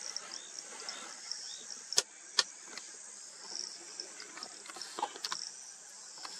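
Insects chirping in a steady, high-pitched chorus. About two seconds in come two sharp clicks, under half a second apart.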